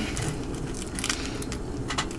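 Plastic wrapper of a rice ball crinkling in a few faint, short crackles as it is pulled open by hand.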